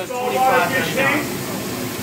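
Voices talking briefly over a steady background hiss.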